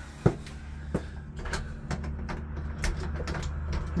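A door latch and handle being worked, with a sharp click about a quarter second in, another about a second in, then lighter ticks and knocks, over a steady low rumble.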